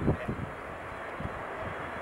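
Boeing 747-8F freighter's four GEnx turbofan engines on final approach, a steady rushing jet noise. A few low thumps come in the first half second.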